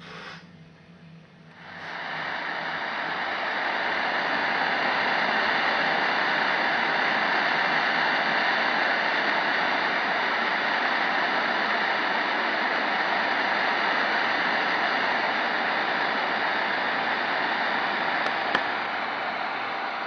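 Tecsun PL-660 radio receiver's longwave static: a steady hiss comes up about two seconds in and holds, with faint steady tones in it.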